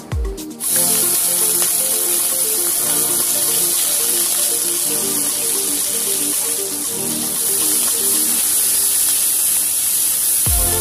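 Prawns sizzling as they fry in hot oil in a wok: a steady hiss that starts suddenly about half a second in, under background music whose beat drops out while the sizzling runs.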